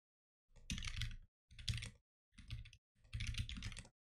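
Typing on a computer keyboard: four quick runs of key clicks with short silent pauses between them.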